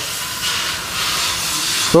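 A steady hiss spread across the upper range, with no speech. It cuts off suddenly at the end.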